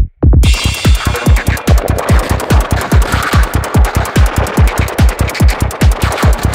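Progressive psytrance track: a steady, fast kick drum and bass. It drops out for a moment right at the start, then comes back in, with a dense, bright synth layer entering about half a second in.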